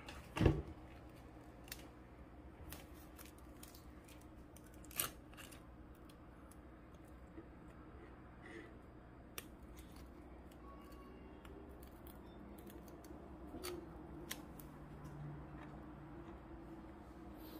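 Kitchen scissors snipping the cooking twine off a roasted rolled pork belly: scattered short snips and clicks. There is a louder knock about half a second in and another about five seconds in, over a faint steady low hum.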